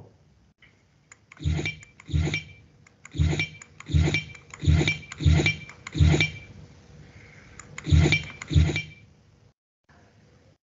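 Computer keyboard keys pressed one at a time, about nine separate clicks spaced under a second apart, with a pause of about two seconds near the end.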